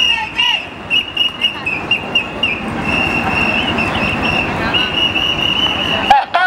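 Protest whistles blown by a marching crowd: a shrill, steady whistling held almost without a break over the general noise of the crowd, with a few shouted voices in the first half.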